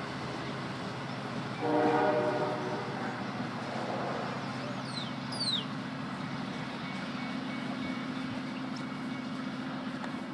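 An LIRR diesel push-pull train pulling away, its locomotive engine droning steadily. About two seconds in, the train sounds one horn blast of just over a second, a chord of several tones.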